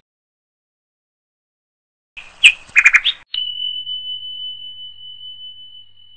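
Subscribe-button animation sound effects after about two seconds of silence: a few quick high chirps and clicks, then a single high ding that holds one pitch and fades away slowly.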